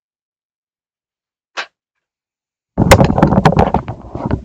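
A single sharp click, then about three seconds in a very loud burst of rapid crackling snaps lasting over a second: a dead short arcing at the mains output of a 2000 W 230 V voltage regulator feeding a PCB preheater, the short that trips the fuses.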